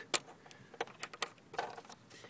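About five light, irregular clicks from the plastic link chain that carries a minivan's sliding-door wiring harness, which has just been released and is being moved loose.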